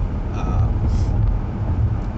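Steady low rumble of a car's interior while driving: engine and road noise heard from inside the cabin.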